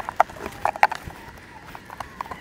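Wooden hive frames knocking and clacking against each other and the box as they are slid over one position. The few sharp knocks come mostly in the first second, over a faint steady hum of honey bees.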